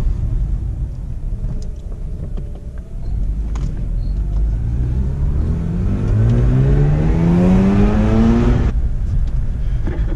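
Mazda RX-8's twin-rotor Wankel rotary engine, heard from inside the cabin. It rumbles at low revs, then pulls up through the revs under acceleration for about five seconds, its pitch rising steadily, and drops off suddenly near the end. It is running well, with the owner saying she sounds better.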